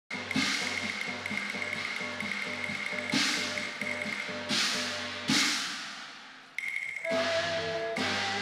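Instrumental introduction of a Cantonese opera song played by a live ensemble. Several loud crashes ring on and fade over the sustained melody and a low repeating beat. The music dies down about six and a half seconds in, then a new sustained passage starts.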